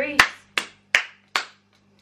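A person clapping her hands four times at an even pace, the first clap loudest.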